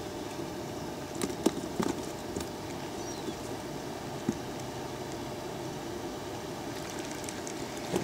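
A few short, irregular clicks and knocks from handling a fishing rod and spinning reel, clustered in the first half, over a steady background hiss.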